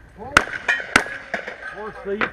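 Two gunshots from a long gun, about half a second apart, sharp cracks that are the loudest sounds here.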